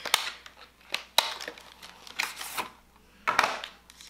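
An eyeshadow palette being taken out of its plastic container by hand: several sharp plastic clicks and short scraping, rustling sounds.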